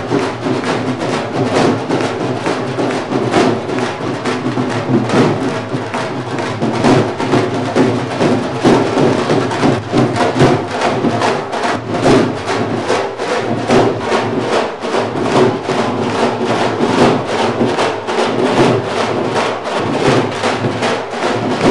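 A group of dhol drums, large double-headed barrel drums, played together with sticks in a fast, steady rhythm of many sharp strokes.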